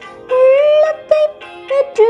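A singer's voice carrying a Tamil psalm melody over instrumental accompaniment, in short sung phrases with brief gaps between them near the middle.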